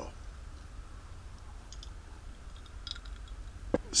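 A pause with a steady low hum and a few faint, short clicks.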